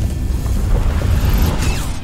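Electrical short-circuit sound effect: a low booming rumble with dense crackling and zapping, easing off a little near the end.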